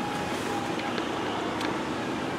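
Steady background noise, an even hum and hiss with a faint steady tone and no distinct event.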